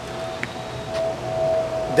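A steady mid-pitched hum at one unchanging pitch, over a low background rumble, with a faint click about half a second in.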